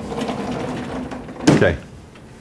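A man clearing his throat with a low, rasping sound, then coughing once, sharply, about one and a half seconds in.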